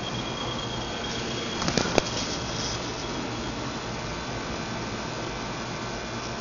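Night-time insect calling: a thin, steady high-pitched trill that fades out about halfway through, over a constant background hiss. A brief rustle and click come about two seconds in.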